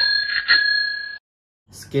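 Bell sound effect rung twice, about half a second apart, two clear high ringing tones that cut off abruptly after about a second.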